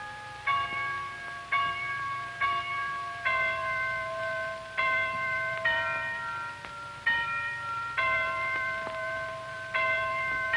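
Tuned bells chiming a slow tune, one struck note about every second, each ringing on and fading before the next.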